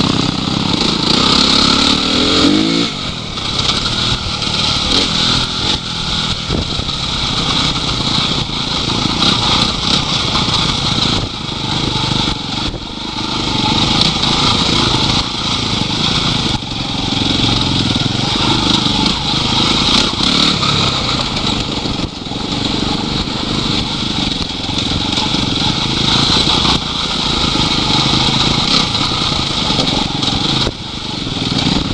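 Enduro dirt bike engine running close to the microphone, its revs rising and falling with the throttle, with a clear rev rise about two seconds in.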